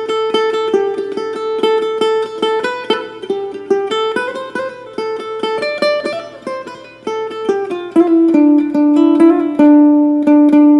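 Acoustic ukulele played solo, fingerpicking a Bengali folk melody in quick plucked notes. About eight seconds in it gets louder, with fast repeated plucks on a lower held note.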